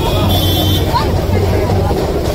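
Busy street traffic with a steady low engine rumble, under a crowd's mixed chatter.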